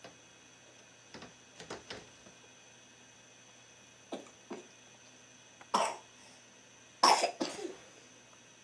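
A baby coughing in a string of short coughs. The first few are soft, and two louder coughs come about six and seven seconds in.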